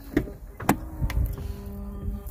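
A 2019 Ram 1500's rear door latch clicking as the door is pulled open, two sharp clicks about half a second apart, with the steady electric hum of the power running board motor deploying the step.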